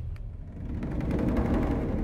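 A low rumble on the film soundtrack swells to a peak about a second and a half in, then eases off.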